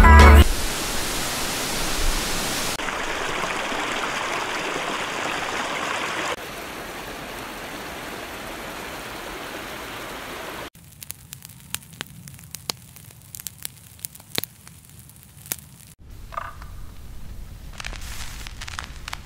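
Rushing river water over rapids, a steady wash of noise broken into clips that jump in level at cuts. After about eleven seconds it gives way to a quieter stretch with scattered sharp clicks and taps.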